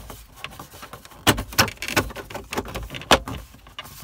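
Plastic instrument-cluster trim bezel of a Jeep Grand Cherokee dash being lined up and pushed into place by hand. There are about four sharp plastic clicks and knocks, from about a second in to about three seconds in.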